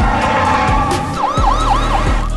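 Police car siren sounding, breaking into a fast up-and-down yelp about four times in under a second from about a second in.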